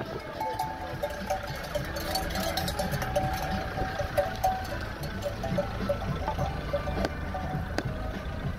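Bells worn by a herd of walking goats clanking irregularly, several pitches overlapping, thinning out in the last few seconds.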